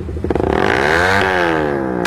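Motorcycle engine rev sample in an electronic dance track: a buzzing engine tone that climbs in pitch to a peak just past the middle, then falls away, over the track's continuing bass.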